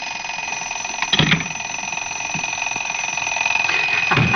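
Mechanical alarm clock bell ringing continuously, a rapid rattle of the hammer on the bell, with a brief knock about a second in.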